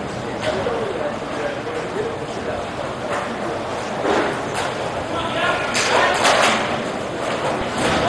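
Roller hockey play in a large indoor rink: a steady background of skating and hall ambience, broken by several sharp clacks of sticks striking the puck, with faint shouts from the players.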